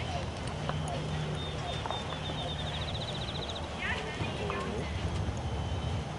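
A horse's hooves at a walk on a soft dirt arena, with a steady low rumble underneath.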